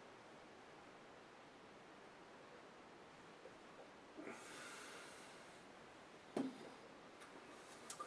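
Near silence, then a soft breath out through the nose lasting about a second and a half, a little past halfway, after a sip of stout. Near the end comes a single short knock, the glass being set down on the wooden table.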